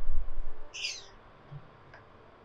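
A low rumble at the start, then one short, high bird chirp falling in pitch about a second in.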